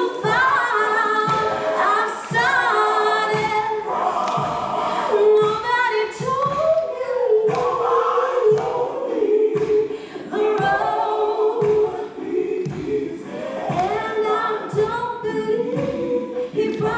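A woman singing a slow devotional song solo into a handheld microphone, her voice amplified through the sound system with long held and sliding notes. Low, soft thuds repeat under the voice a little faster than once a second.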